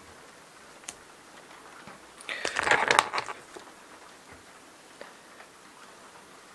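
Small handling noises at a fly-tying vise as the thread is tied off at the head of the fly: a single click about a second in, then a brief crackly rustle of thread, fingers and foam lasting about a second near the middle, followed by a few faint ticks.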